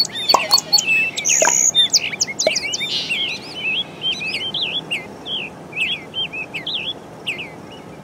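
Birds chirping: many quick, overlapping chirps and whistles, gradually fading toward the end.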